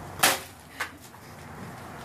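A blow striking a hanging paper piñata: one sharp smack about a quarter-second in, then a lighter knock about half a second later.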